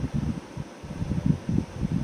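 Low, uneven rumbling noise that pulses irregularly, with no voice.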